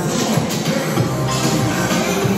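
Hip-hop music with a steady beat and heavy bass.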